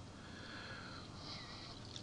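A faint breath drawn in by the narrator over low room hiss.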